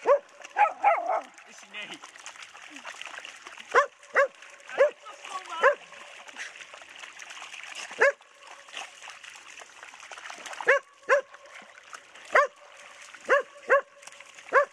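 White spitz dogs barking in short, high, sharp barks, about a dozen in irregular bursts, some in quick pairs. Faint splashing of water runs underneath.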